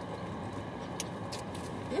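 Steady hum of a car running, heard inside its cabin, with a couple of light clicks about a second in.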